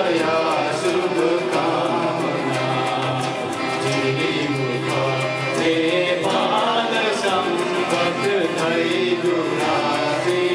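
A mixed group of men and women singing a welcome song together, accompanied by a harmonium holding steady low notes.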